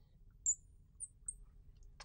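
Marker squeaking on glass as a label is written on a lightboard: three short, high-pitched squeaks, about half a second, one second and a second and a quarter in.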